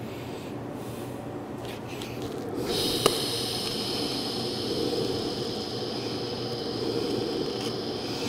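Electric welding arc struck about two and a half seconds in, then running steadily as an even hiss with a high, constant tone while filling a rosette weld in steel.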